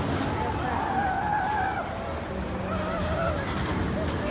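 Steel roller coaster train running on its track: a low rumble with a wavering, drawn-out squeal from the wheels.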